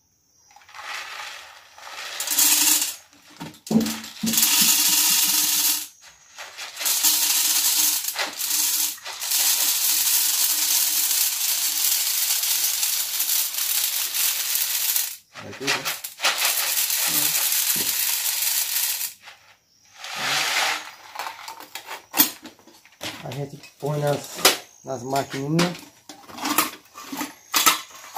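Dry maize kernels poured from a plastic bottle into the seed box of a hand jab planter (matraca), a steady grainy rattle in several pours, the longest lasting about eight seconds.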